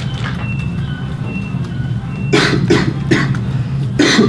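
A person coughing three times in quick succession about two seconds in, over a steady low room hum.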